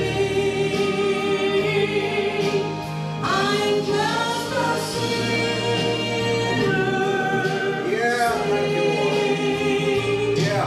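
A woman singing a gospel song solo into a handheld microphone over musical accompaniment, holding long notes, with a short dip between phrases about three seconds in.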